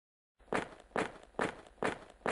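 Sound-effect footsteps: four even steps at about two a second, starting about half a second in.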